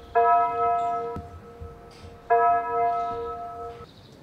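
A bell struck twice, about two seconds apart, each stroke loud at first and then ringing on and fading.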